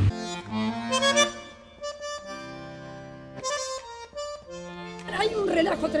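Accordion music: a short tune of held notes and chords that change pitch, with brief gaps between phrases.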